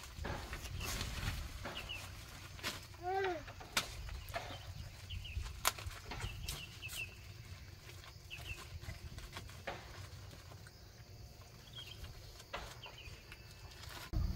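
A woven plastic tarpaulin rustling, with scattered light knocks and clicks, as it is hung and tied up from a wooden rafter. Small high chirps come and go, and one short rising-and-falling call sounds about three seconds in.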